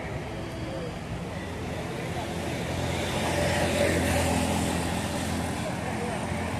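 Road traffic alongside a town pavement: a motor vehicle passing swells in the middle and fades, over a steady background of street noise.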